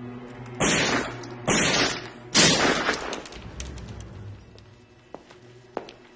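Three gunshots fired in quick succession, under a second apart, each trailing off in a short echoing tail, over a low steady drone. A few faint clicks follow near the end.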